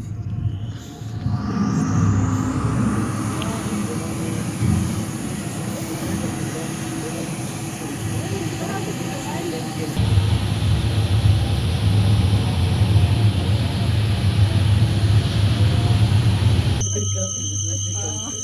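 Soundtrack of an immersive projection show on loudspeakers in a large hall: a rising whoosh over the first two seconds, then a dense rushing noise over a deep rumble that swells about ten seconds in. Near the end it switches suddenly to a thinner sound with steady high tones.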